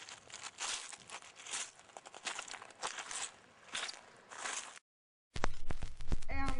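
Irregular crackling and rustling noise in uneven bursts, with no clear tone. Just before five seconds it cuts out for half a second, then music from the record comes in near the end.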